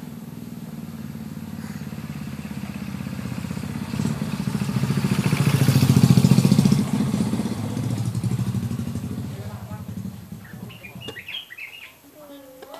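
A motor vehicle's engine passing by, growing louder to a peak about six seconds in and then fading away.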